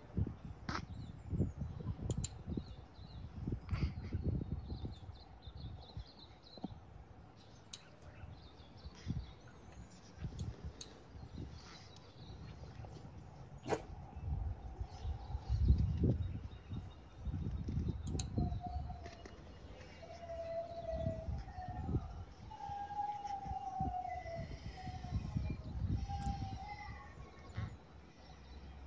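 Wind gusting on the microphone in irregular low rumbles, with scattered clicks. In the second half a faint wavering tone comes and goes.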